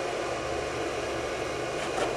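Steady, even background hiss with a low rumble beneath it, with no distinct events.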